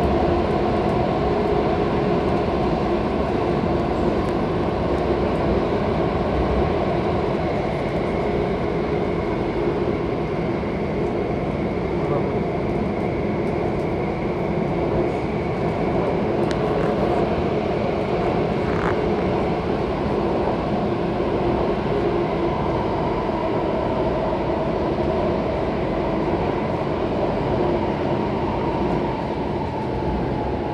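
Interior of an Alstom Metropolis C751C metro car running at speed through a tunnel: a steady rumble of wheels on rail with several level, humming tones held over it.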